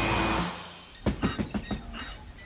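Music fades out in the first half second. From about a second in comes a quick run of knocks on a motorhome door.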